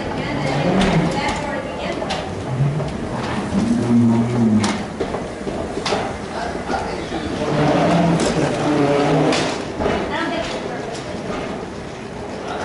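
Indistinct voices, including a few low, drawn-out voiced sounds, over steady background noise with occasional sharp clicks and knocks.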